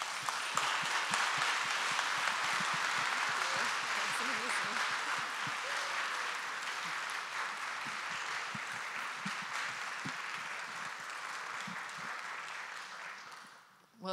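Audience applauding steadily, the applause dying away near the end.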